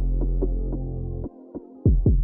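Instrumental UK drill beat with no vocals. A deep 808 bass note is held for just over a second and then cuts out, and a new 808 note slides down in pitch near the end, under light hi-hat ticks.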